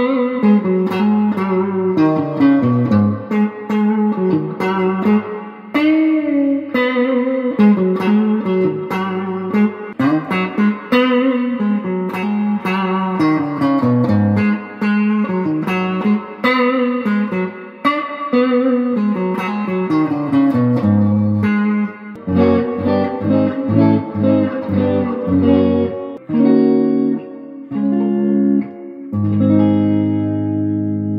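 Two Epiphone Les Paul Studio electric guitars played in turn on the neck humbucker: single-note lead lines. Near the end the playing turns to chords for the rhythm sound.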